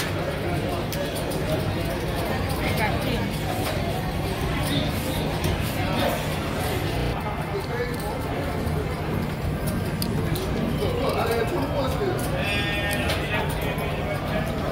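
Casino floor ambience: a steady din of background voices and music over a low hum, with scattered light clicks. A brief high warbling sound comes near the end.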